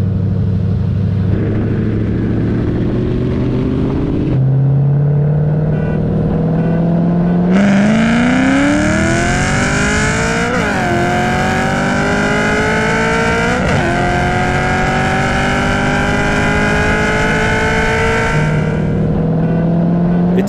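Cammed, stroked 4.9-litre three-valve Ford V8 of a 2007 Mustang GT with full exhaust, running steadily at part throttle, then going to full throttle about seven and a half seconds in. The note rises in pitch through two quick upshifts and settles to a steady lower note near the end as the throttle is lifted.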